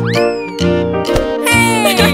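Cartoon background music with a cartoon cat's meow-like calls over it: one rising and falling just after the start, and a falling one near the end.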